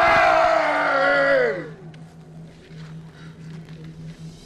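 A group of actors giving a long, drawn-out shout that falls in pitch and dies away about a second and a half in. After that only a faint steady low hum remains.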